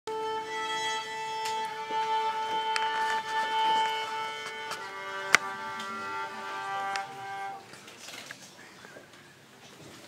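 Violin playing long, steady held notes, moving to a lower note about five seconds in; a single sharp click sounds just after, and the notes die away about two and a half seconds later.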